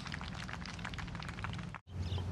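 Outdoor background noise, a steady crackling hiss with no clear single source, cutting out sharply for an instant near the end.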